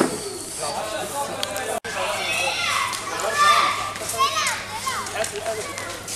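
Several children's high voices shouting and calling in the street, with a short break about two seconds in.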